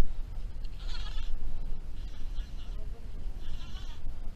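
Wind buffeting the microphone as a steady low rumble, with three short hissing sounds: about a second in, at about two seconds and near the end.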